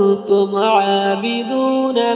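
Quran recitation: one voice chanting a long, drawn-out melodic line in the tajweed style, holding notes that step up and down in pitch, with a brief break near the start.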